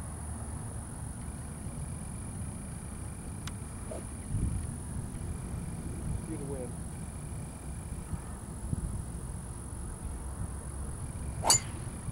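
Golf driver striking a teed ball: one sharp crack near the end, the loudest sound here.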